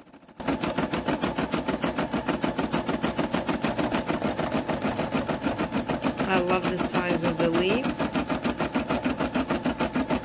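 Brother SE600 computerized embroidery machine starting up about half a second in and then stitching at speed, a rapid, even needle rhythm as it sews a leaf design through vinyl floated on paper stabilizer.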